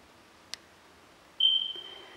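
A single sharp click, then about a second later a short, steady high-pitched tone that starts suddenly and fades out.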